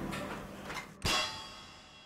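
A single metallic clang about halfway through, ringing out and fading over the next second.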